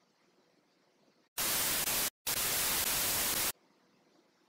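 Two loud bursts of static white noise, edited into the soundtrack: a short burst about a second and a half in, a brief drop to dead silence, then a longer burst of over a second that cuts off suddenly.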